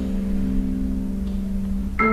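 Live chamber ensemble music: a low, sustained string chord is held and slowly fades, and a new note is struck sharply right at the end.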